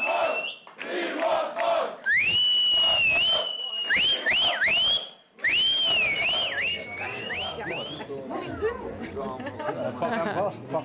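Audience cheering and shouting, with shrill, high-pitched cries and whistles that swoop up and down in pitch from about two seconds in until about eight seconds in.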